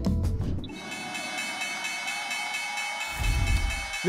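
A music sting cuts off about half a second in. Then the New York Stock Exchange closing bell, an electric bell, rings with a steady, high, continuous tone, signalling the 4 p.m. market close.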